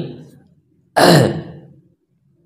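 A man's short breathy vocal sound, like a sigh, about a second in, strongest at its start and fading out within a second.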